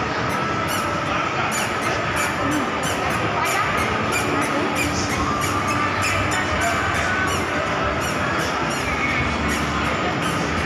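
Busy indoor shopping-mall ambience: a dense, echoing wash of crowd noise, with music playing.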